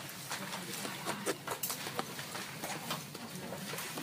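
A run of light, irregular clicks and taps, several a second, over faint background noise.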